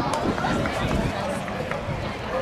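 Indistinct chatter of spectators in a ballpark crowd, several voices overlapping with no words standing out.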